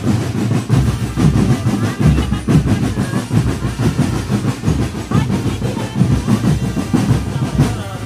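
Marching drum band playing: fast, dense snare drum patterns over repeated bass drum beats, loud and continuous.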